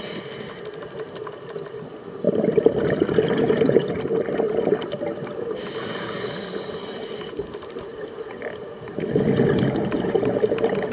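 Scuba regulator breathing underwater. A loud gurgling burst of exhaled bubbles comes about two seconds in, a thin hiss of inhaling through the regulator follows around six seconds, and the bubbles come again near the end.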